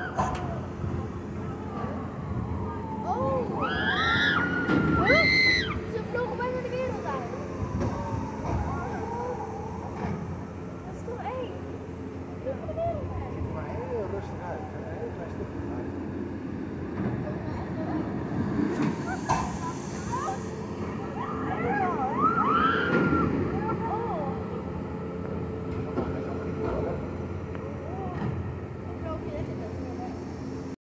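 Shrieks and yells from riders on a thrill ride, in two clusters, the first a few seconds in and the second late on, over a steady low mechanical hum.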